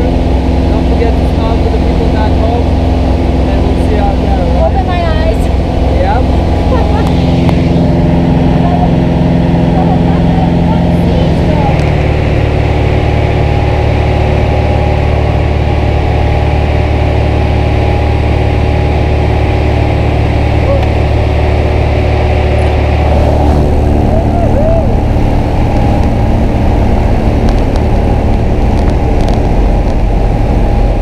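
Engine of a small single-engine jump plane droning loudly and steadily, heard inside the cabin, its note shifting about 7 and 12 seconds in and again about 23 seconds in.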